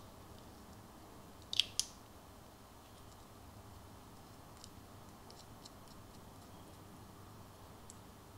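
Small metal clicks of an airbrush paint cup being fitted by hand onto the airbrush body: two sharp clicks close together about a second and a half in, then a few faint ticks.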